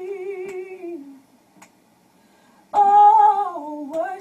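A woman's voice holding a long sung note with a slight waver, trailing down and fading out about a second in. After a short quiet gap, a loud new sung phrase starts near the end.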